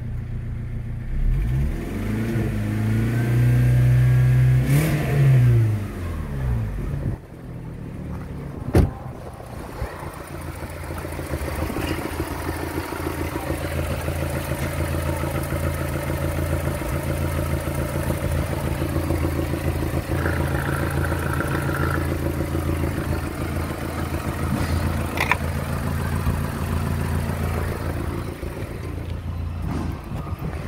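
Volkswagen Polo engine revved up and back down a few times, then settling into a steady idle; a single sharp knock sounds about nine seconds in.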